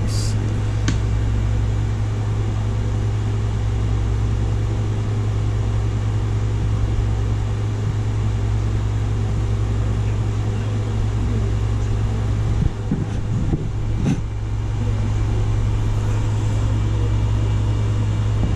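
A steady low machine hum, unchanging throughout, with a few short clicks: two near the start and one near the end.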